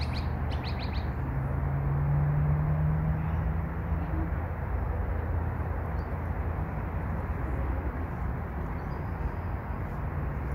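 A few short bird chirps in the first second, with fainter ones later, over a steady low outdoor background rumble. A low steady hum runs for a few seconds.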